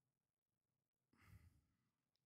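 Near silence, with one brief, faint breath out, like a sigh, about a second and a quarter in.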